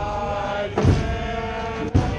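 Soccer supporters' section singing a chant together in long held notes, with a thump about a second in and another near the end.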